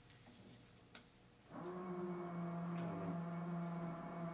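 A steady electrical hum cuts in about a second and a half in and holds at an even pitch, after a near-silent start broken by one faint click about a second in.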